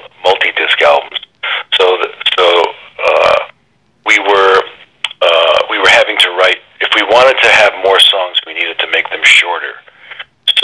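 Speech only: a man talking, with the thin, narrow sound of a telephone line.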